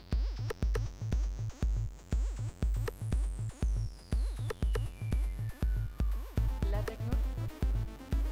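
Electronic house track made on a Roland JD-Xi synthesizer: a steady drum-machine kick beat, with a high synth tone gliding down in a long sweep from about three seconds in to about six seconds.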